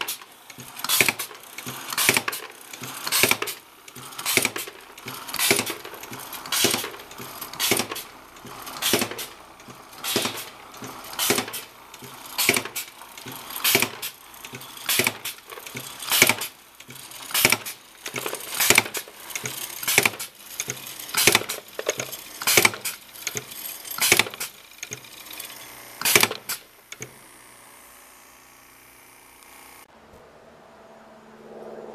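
Air-powered T-cork insertion machine cycling over and over, a sharp clack with a short hiss of air about once a second as it presses corks into bottles. The strokes stop a little before the end.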